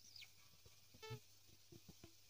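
Near silence: room tone, with a faint high chirp right at the start and a few faint soft clicks, as from fingers shifting on the guitar neck.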